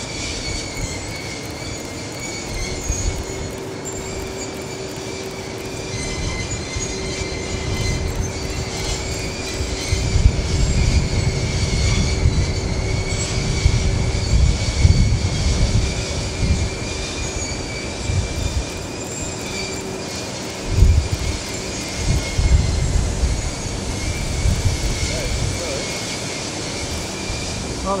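Ventilation fans of a Cimbria grain dryer running with a steady high-pitched whine. From about ten seconds in, a low, uneven rumble of moving air builds up as further fans start and their outlet flaps lift open.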